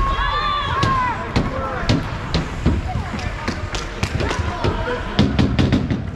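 Irregular sharp knocks of hockey sticks and puck on the ice and boards of an ice rink, with a long shouted call in the first second.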